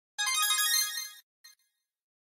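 A short, bright electronic chime jingle lasting about a second, followed by a faint brief echo of it.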